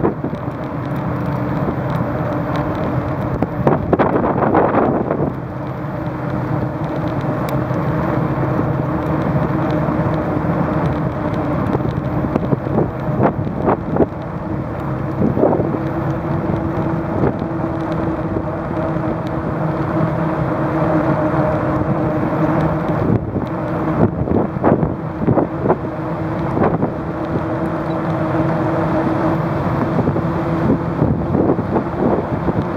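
Bicycle riding along a paved path, heard from the bike: a steady hum that holds one pitch, with wind on the microphone and scattered knocks and rattles from bumps in the path.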